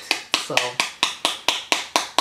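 Make Up For Ever Ultra HD Matte Setting Powder jar tapped over and over, about five sharp knocks a second, to shake the loose powder out through its sifter, which lets little through at a time.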